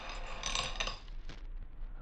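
A curtain being drawn aside on metal rings, the rings jingling as they slide along the rod. It is loudest about half a second in and fades out within a second.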